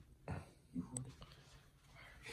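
Hushed, breathy laughter with a whisper, kept under the breath. There is a small click about a second in.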